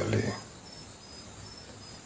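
A cricket chirping steadily at night, short high chirps repeating evenly about two or three times a second.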